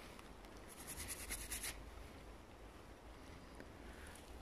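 A toothbrush scrubbing dirt off a small silver coin, a Silbergroschen: a faint burst of rapid brush strokes about a second in, lasting about a second.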